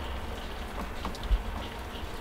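Steady low rumble and faint hiss of outdoor background noise, with a few faint ticks and one soft low thump a little past the middle.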